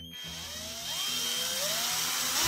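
Philco PPF03 12 V cordless drill/driver running free, its motor whine climbing in pitch as the variable-speed trigger is squeezed further.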